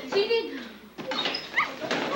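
Children's voices and chatter, with a brief high-pitched cry near the start and a single sharp knock about a second in.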